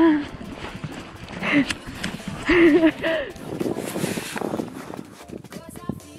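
Quick footsteps crunching through snow on ice as a person hurries along, with short vocal sounds from the runner in the first three seconds.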